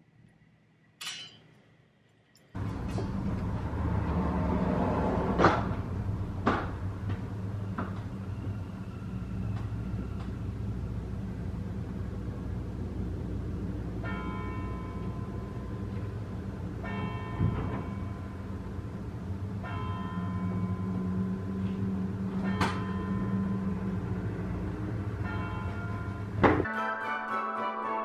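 Bells ringing over steady outdoor street noise, as several separate peals in the second half. There are two sharp knocks a few seconds in.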